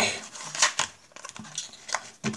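Playing cards and a cardboard card box being handled: short scraping and rustling in the first second, then a sharp click near the end.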